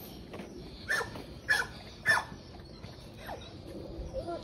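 A puppy whining: three short high cries falling in pitch, about half a second apart, then a fainter one near the end.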